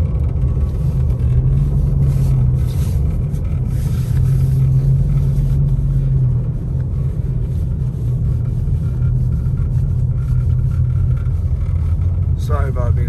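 Car driving on a snow-covered road, heard from inside the cabin: a steady low rumble of engine and tyres.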